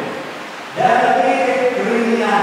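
Voices singing slowly in long sustained notes. The singing is softer at first, then a strong held note enters just under a second in and runs for about a second before the next note.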